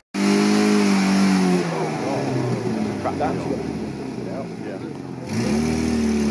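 Classic sports car's engine pulling hard up a steep muddy climb. The note holds steady, falls away after about a second and a half, then rises again and holds near the end.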